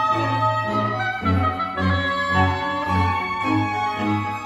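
Live chamber septet of two violins, viola, flute, oboe, cello and double bass playing a contemporary classical piece: held high notes over a low repeated pulse of about two notes a second.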